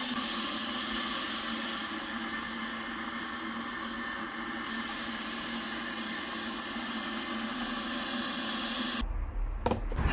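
Stainless steel electric kettle heating water: a steady hissing rush with a faint hum under it, which cuts off about nine seconds in.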